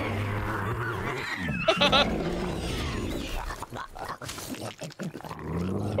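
Dragon calls from an animated film's soundtrack, with a short laugh from a viewer about two seconds in.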